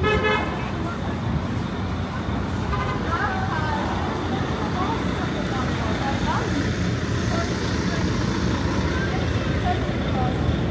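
City street traffic with a steady low rumble, and a short vehicle horn toot right at the start. Passersby talk faintly over it.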